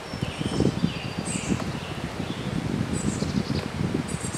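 Honeybees buzzing around an open hive box over a rough low rustle, with a few short bird chirps higher up.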